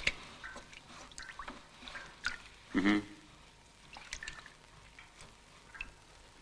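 Faint, scattered clicks and light taps of small objects being handled, with a brief low vocal sound a little before halfway.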